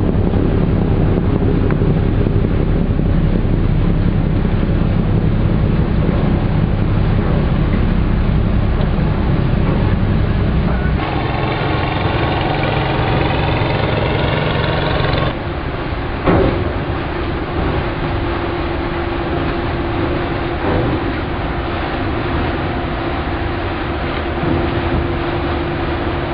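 Steady low drone of a ship's engine, heard aboard a Yangtze river cruise ship with wind on the microphone. For a few seconds in the middle a higher buzzing engine note with many overtones comes in, from a small motorboat passing across the river, and then a quieter steady hum remains.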